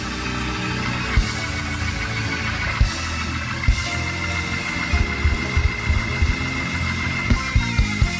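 Live church band music: sustained low chords with bass under scattered drum hits, the hits coming closer together in the second half, and a high held note joining about halfway through.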